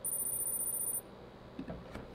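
A high, thin electronic tone from the Kahoot quiz software, with a slight flutter, sounding for about a second as the quiz moves on from the scoreboard, then cutting off suddenly.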